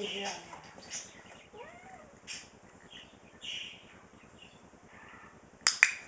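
A training clicker clicking sharply twice in quick succession near the end, after a few seconds of quiet with faint scattered ticks.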